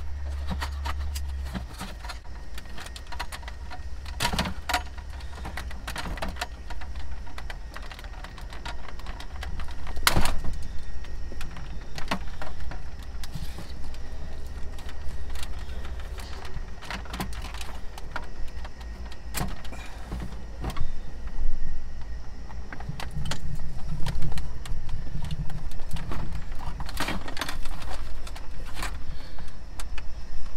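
Plastic dash bezel being pried and pulled loose by hand: irregular clicks, snaps and knocks of the trim and its retaining clips, with the ignition keys jingling against the column, over a steady low rumble.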